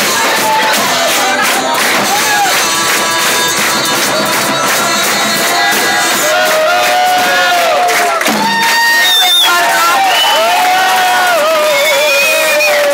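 A live band with flute and violin playing, with an audience cheering over it; from about halfway through, loud whoops and shouts rise above the music.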